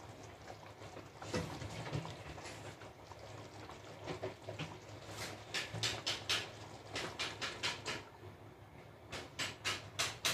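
Pan of thick pork curry simmering on the stove: faint bubbling with a run of small pops and clicks in the second half, over a low steady hum.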